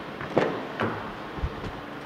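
Rear passenger door of a 2012 Toyota Prius being opened by hand: a sharp latch click, a second click, then a few low thumps as the door swings open.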